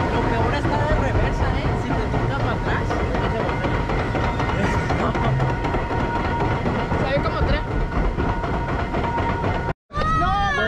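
A round raft being carried up a ride's conveyor lift, giving a steady mechanical rumble and rattle, with voices and music mixed in. The sound cuts out briefly near the end.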